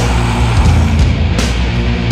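Instrumental sludge doom metal: heavy distorted guitars and bass holding low sustained notes under drums, with cymbal crashes at the start and about one and a half seconds in.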